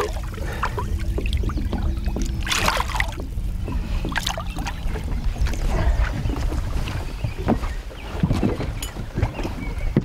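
Water splashing in short bursts as a muskellunge is handled in a landing net at the boat's side and lifted out, over a constant low rumble of wind on the microphone. A steady low hum runs under it for about the first half.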